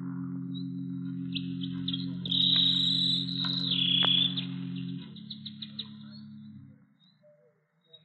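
A low sustained organ chord that shifts about five seconds in and then fades away, with a canary trilling and chirping high above it, loudest in the middle.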